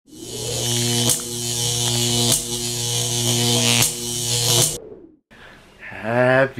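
A loud, steady low buzz with many overtones, broken by a sharp click three times, and cutting off suddenly a little before the fifth second.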